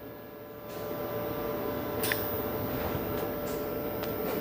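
Steady hiss of 75% argon / 25% CO2 shielding gas flowing through a MIG regulator's ball flowmeter as the flow is set, starting about a second in, with a faint steady hum under it. A single click about two seconds in.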